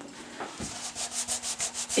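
A cloth rubbed quickly back and forth over a painted wooden cabinet face, wiping off a smear of wet wood stain. The strokes start about half a second in and come several a second.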